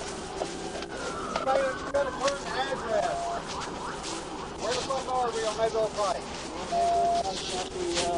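Indistinct voices talking at a distance, with two short steady beeps, one about three seconds in and one near the end.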